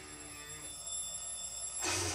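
Alarm clock ringing in the anime's soundtrack, playing at a moderate level with steady high tones. A short rush of noise comes near the end.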